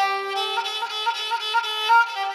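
Solo kamancheh (Persian spike fiddle), bowed: a quick run of short notes, about four a second, over a held lower note, with a loud accented note near the end.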